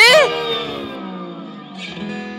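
A woman's short, shrill scream with a rapidly wavering pitch, followed by a dramatic ringing sound effect that slowly falls in pitch and fades. Near the end a brief whoosh leads into background music.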